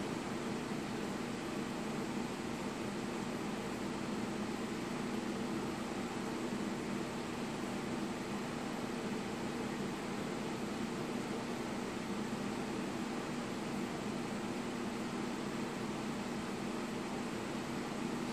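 Steady room tone: an even hiss with a faint low hum, unchanging throughout.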